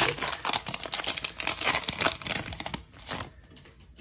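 Foil wrapper of a trading-card pack being torn open and crinkled by hand: a dense crackle that thins out after about three seconds.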